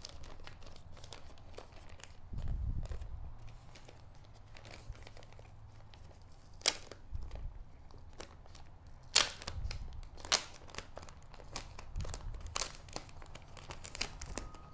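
Plastic bag crinkling and being torn open by hand, with scattered sharp crackles and a few low bumps from handling; the loudest bump comes about two and a half seconds in.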